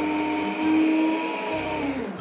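Electric stand mixer whirring steadily, its beaters whipping cake batter as the milk is worked in. Its pitch drops slightly near the end.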